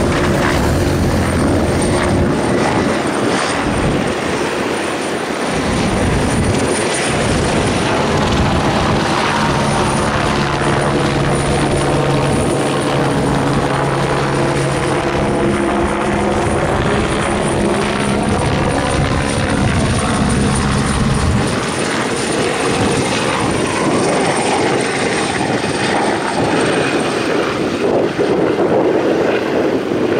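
A helicopter running loud and steady overhead, its drone slowly shifting in pitch as it moves. The deepest rumble drops away about two-thirds of the way through.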